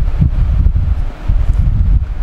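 Loud, fluctuating low rumble of air buffeting the microphone.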